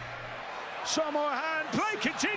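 Speech only: a man's voice talking in the second half, quieter than the reactor's own talk around it, from the match broadcast's commentary.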